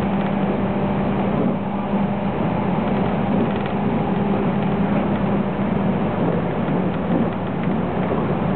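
JR West 221 series electric train running at speed, heard from inside the car: a steady rumble from the running gear with a steady low hum underneath.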